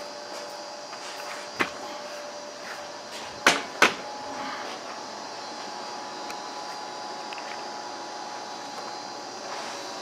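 A few sharp knocks or clicks, one about a second and a half in and two close together about three and a half seconds in, over a steady background hum with faint steady tones.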